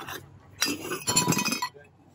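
Porcelain saucers clinking together as they are handled, a clattering clink with a ringing tone lasting about a second, starting about half a second in.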